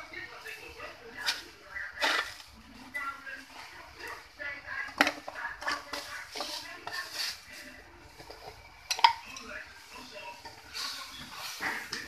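Cooking utensils knocking and scraping against an aluminium wok as mushrooms in it are stirred. There are several sharp clinks, the loudest about two, five and nine seconds in.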